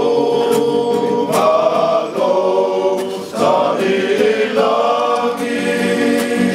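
A men's choir singing a Samoan song in harmony, holding long notes, with an acoustic guitar strummed along.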